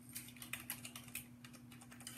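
Faint, irregular light clicks, several a second, over a steady low hum.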